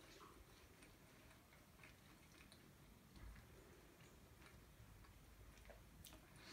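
Near silence: a person quietly chewing a mouthful of pastry with the mouth closed, giving faint, irregular small mouth clicks.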